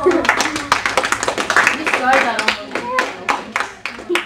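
A small group clapping with separate, distinct claps, with voices over it, as applause for a card reveal.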